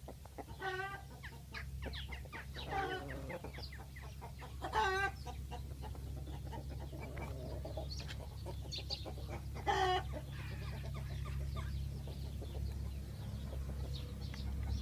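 Tringjyrshe chickens, a Kosovar tricolour breed, clucking: a handful of short calls, each under half a second, the loudest about five and ten seconds in, over a steady low rumble.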